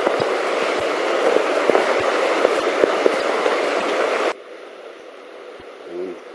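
Rushing river water, a loud steady wash with small scattered clicks, that cuts off abruptly about four seconds in, leaving a much quieter outdoor background.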